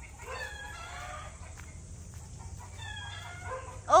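Chickens calling: a rooster crowing for about a second, then a shorter call about three seconds in.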